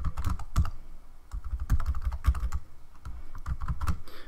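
Typing on a computer keyboard: a run of quick, irregular keystrokes, with a short lull about a second in.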